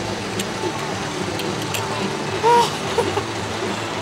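Steady low rumble with a hum running under it, and a short pitched sound that rises and falls about two and a half seconds in.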